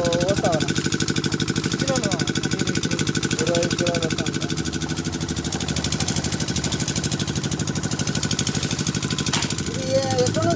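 An engine running steadily at an even, rapid chug.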